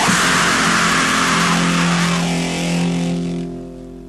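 Emoviolence band's distorted guitar chord and crashing cymbals held and ringing out together, played from a 7-inch vinyl record. Near the end it dies away to a much quieter level.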